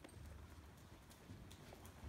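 Faint hoofbeats of a ridden sorrel overo paint gelding moving over the dirt footing of an indoor arena, a few soft strikes over a low rumble.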